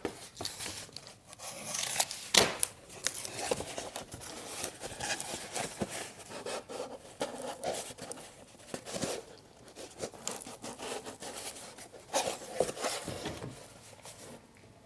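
Cardboard being folded, creased and handled on a worktable: irregular rustling, scraping and crinkling, with a sharp snap about two seconds in.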